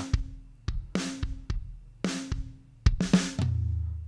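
Logic Pro X virtual drum kit playing a kick-and-snare beat through a soloed parallel-compression bus. A Vintage VCA compressor set to about 19:1 squashes every hit hard, which gives a dense, punchy, 'kind of wild' sound. Near the end a low drum hit rings on for most of a second.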